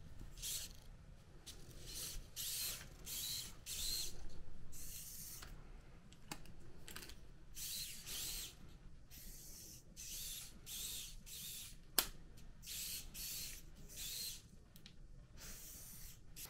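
Open Bionics bionic hand's small finger motors whirring in short bursts, about one or two a second, as the fingers open and close. A single sharp click comes about twelve seconds in.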